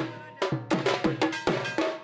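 Raibenshe folk dance rhythm played on a dhol drum with ringing bell-metal gong (kansi) strikes, fast, about three to four strokes a second, with a brief break near the end.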